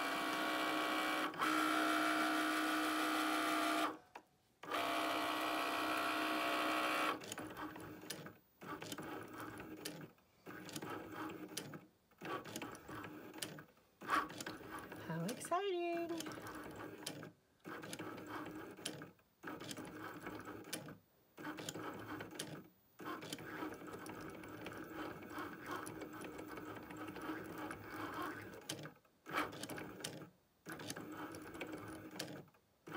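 A Cricut cutting machine's motors whine as they drive a heated Foil Quill across the mat to press foil onto the card. The sound runs loud and steady for the first several seconds, then turns stop-start, with runs of a second or two and brief pauses between them. About halfway through there is one quick rising whine.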